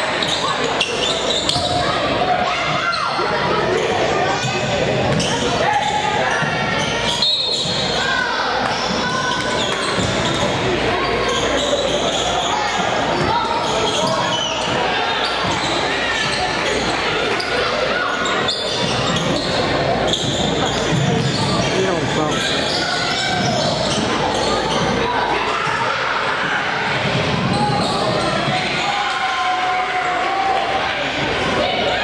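Basketball game in an echoing gym: a ball bouncing on the hardwood court amid a steady hubbub of indistinct players' and spectators' voices.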